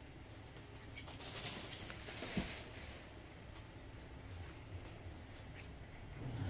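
Quiet room noise with faint rustling and a few light clicks, and one soft knock about two and a half seconds in.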